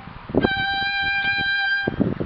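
Violin playing a single held high note on the E string, bowed for about a second and a half and then stopped, as a demonstration of vibrato. It sounds really disgusting on the E string.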